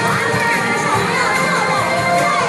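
A crowd of young children shouting and cheering together, many high voices at once, with music going on underneath.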